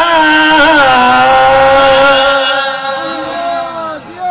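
A man's voice chanting one long drawn-out note in the sung style of a majlis zakir's recitation; the pitch bends briefly about half a second in, then holds steady and fades near the end.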